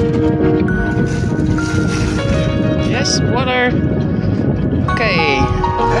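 Background music with long held notes over a steady low rumble, with a brief voice about halfway through and a laugh near the end.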